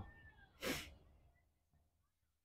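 A single short whimper from a nervous dog, about half a second in, with near silence around it.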